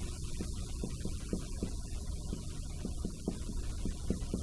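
Marker tip tapping and stroking on a whiteboard while an equation is written: short irregular ticks, several a second, over a steady electrical hum.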